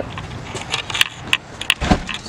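Footsteps and camera-handling noise while walking: a string of sharp light clicks and ticks, loudest about halfway through, and a dull low thump near the end.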